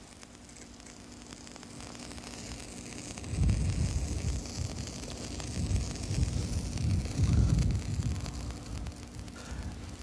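A potassium permanganate and sugar mixture is ignited by friction from a stick ground into it. A hiss builds over the first three seconds. Then the mixture flares up and burns with a low rushing sound that surges and falls for several seconds.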